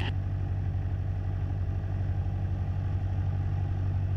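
Cessna 172SP's four-cylinder Lycoming engine and propeller running steadily at low taxi power, heard inside the cabin.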